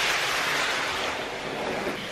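Steady rustling and scraping of a large cardboard carton as it is tipped over onto the floor and its lid flaps are pulled open.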